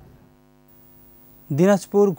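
Faint steady electrical hum with several even overtones during a gap in the audio, then a man starts speaking about one and a half seconds in.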